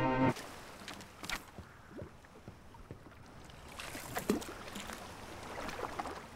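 Music cuts off just after the start, leaving a faint ambience of the rocking houseboat: soft creaks and a few small knocks over a low hiss, a little louder near the end.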